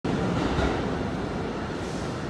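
Subway train rumbling in the tunnels of an underground station, a steady low rumble with hiss that eases slightly over the two seconds.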